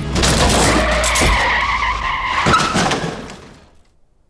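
A car skidding, its tyres squealing, with heavy thuds of impact about a second in and again past two seconds, then fading out before the end.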